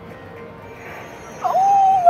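Low slot-machine music and casino background, then, about one and a half seconds in, a woman's loud, drawn-out, high-pitched "ooh" of excitement.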